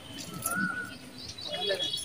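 Indistinct voices of people in the background, with a short single bird call about half a second in.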